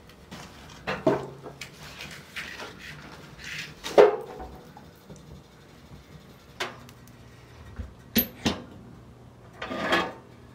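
Firewood being loaded into a wood stove: a series of wooden knocks and clunks, the loudest about four seconds in, with brief scraping between them and two sharp clicks near the end.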